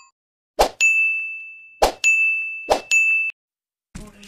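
Notification-bell sound effect: three dings, each a sharp click followed by a ringing tone at the same high pitch, the last cut off abruptly.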